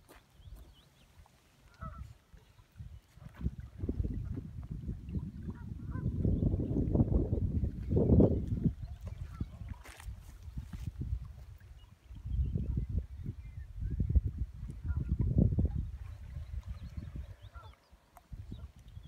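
Wind buffeting the microphone, a low rumbling that swells in two long gusts and dies down between them.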